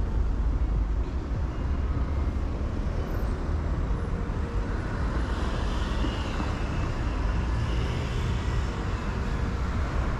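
Steady low rumble of wind on a moving rider's camera microphone, mixed with road and traffic noise from the surrounding cars.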